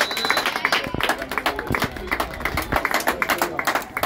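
A short, high referee's whistle at the very start, marking half time, then spectators clapping and applauding throughout.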